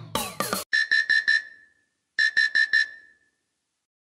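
LG KS360 mobile phone ringtone playing: the tail of a synth phrase with falling sweeps, then two groups of four quick high electronic beeps about a second and a half apart, the second group fading out.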